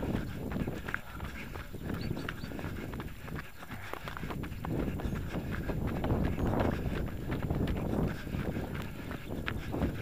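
Runners' footfalls on a country lane, with wind rumbling on the camera's microphone.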